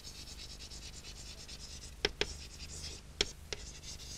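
Chalk writing on a blackboard: a run of short scratching strokes, with four sharp taps of the chalk in the second half.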